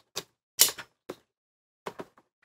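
Cardboard box being cut open with a small hand blade. There are four short cutting and tearing sounds, the loudest just over half a second in.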